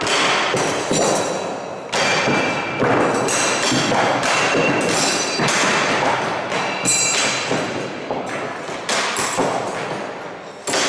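Steel throwing knives striking wooden target boards in quick succession, a rapid series of thuds, some with a short metallic ring from the blade.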